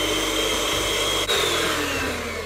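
Electric hand mixer running steadily, its beaters whipping egg whites in a glass bowl. There is a brief break about halfway through, after which the motor's pitch drops slightly.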